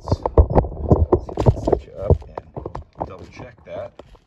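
Handling noise: a quick, uneven run of clicks and knocks as small metal tools and parts are picked up and set down on a workbench, and the phone camera is moved around.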